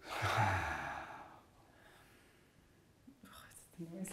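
A long breathy sigh let out as an 'oh' on the exhale, lasting about a second and a half, followed by a faint breath near the end.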